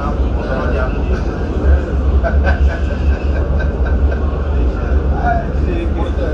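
Tram running along its line, heard from inside the car: a steady low rumble with running noise and indistinct voices.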